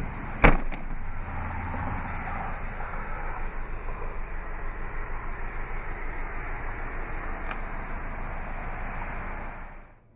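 A sharp click about half a second in, with a lighter one just after it: the latch of a Toyota RAV4's 60/40 split rear seat releasing as its lever is lifted to fold the seat. Then a steady low rustling noise.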